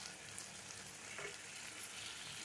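Chicken kosha, a thick chicken and potato curry, sizzling faintly and steadily as it fries down in a kadai.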